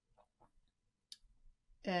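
A mostly quiet pause with a single short, sharp click just past halfway, then a woman's speech starts near the end.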